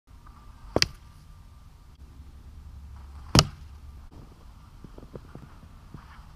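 Two sharp impacts about two and a half seconds apart: atlatl darts striking. A few faint crunches of footsteps in snow follow near the end.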